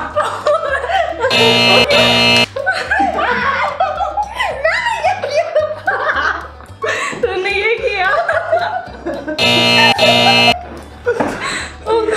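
Three people laughing hard over background music. Twice, about a second in and again near the end, a loud held buzzing tone sounds for about a second.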